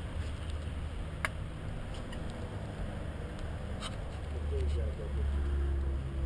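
Low, steady outdoor rumble that swells in the last couple of seconds, with two light clicks and faint voices in the background.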